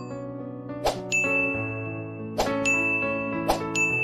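Sound effects of an animated subscribe-button end screen over background music: three sharp clicks, each followed by a bright ding, about a second or so apart, over sustained keyboard chords.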